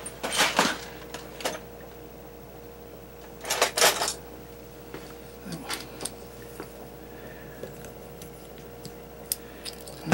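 Small plastic parts of a rubber bulb duster clicking and rattling as its nozzle tubes and cap are handled and fitted together: two short clattering bursts, about half a second in and just before four seconds, then a few light clicks.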